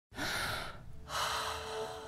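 Two audible breaths from a person, a short one at the very start and a longer one about a second in. A faint held music note comes in under the second breath.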